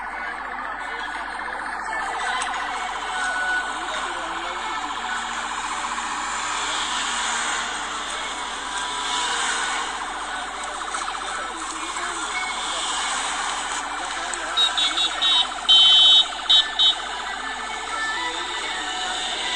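Vehicle siren with road noise from a moving vehicle, played back through a phone's speaker. Near the end a run of short, loud, high-pitched beeps.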